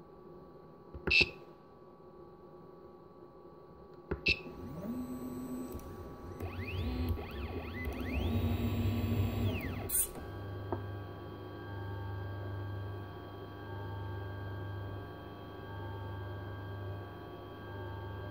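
Stepper motors of a home-built CNC machine driving its axes: after two short sharp clicks, the motors whine in steady tones and in rising and falling glides as the axes speed up and slow down. About ten seconds in a sharp click is followed by a steady motor hum with a low tone that swells about once a second.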